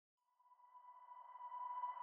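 A faint, steady, pure electronic tone fading in from silence and swelling steadily louder: the rising intro sound effect that leads into the channel's logo animation.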